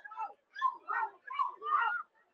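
A higher-pitched voice making about five short calls, fainter than the commentary on either side.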